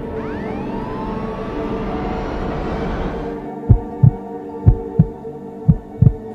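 Dark ambient background music opening with sweeping rising tones. About halfway through, a heartbeat sound effect comes in over it: low thumps in pairs, about one pair a second, louder than the music.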